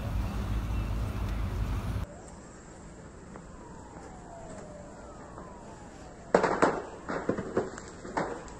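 A steady rumbling outdoor roar for the first two seconds. After a cut it drops to a quieter background with a faint falling tone, and then from about six seconds in come a run of sharp, loud cracks and bangs in quick succession from the burning supermarket.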